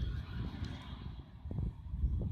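A gloved hand scrapes and pulls at loose soil and straw stubble, with a few short rustles and clicks, over a low, uneven rumble on the microphone.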